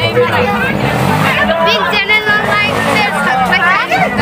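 Several people talking at once, close to the microphone, over a background of crowd chatter.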